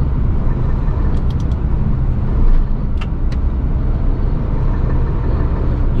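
Long-haul truck's diesel engine and road noise, a steady low drone while it rolls slowly in traffic. A few light ticks come about a second in and again around three seconds in.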